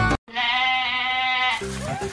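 Banjo music cuts off abruptly. After a brief gap, a single quavering, bleat-like cry lasts about a second, and then other music starts.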